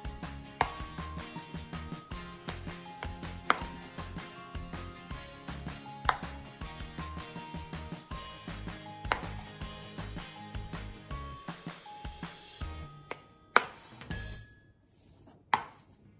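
A metal spoon stirring mashed potato with ham and frankfurter pieces in a bowl: soft scraping and a sharp knock against the bowl every few seconds, the loudest near the end. Background music with a stepping melody plays underneath and drops away briefly near the end.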